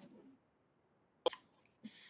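Mostly quiet, broken once past the middle by a single short, sharp click, with a faint breath just before speech resumes.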